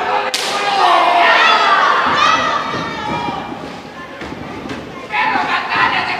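A single sharp slap of an open-hand chop landing on a wrestler, about a third of a second in, followed by shouts from the crowd; a little after five seconds the crowd's yelling swells into a dense wall of voices.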